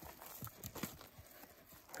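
A horse walking on soft dirt: faint, irregular hoof thuds.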